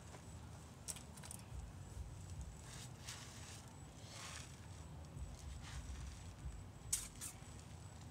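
Faint handling and movement sounds from a person searching by hand around a target stand: soft rustles and a few light clicks, two of them close together near the end, over a low rumble.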